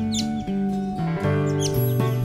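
Instrumental background music with sustained low notes that change pitch about every half second. Two brief high chirps sound over it, one just after the start and one near the end.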